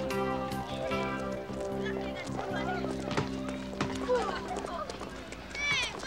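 Background music with sustained chords fades out over the first half, while young voices chatter and call out in the background. One voice rises in a high call just before the end.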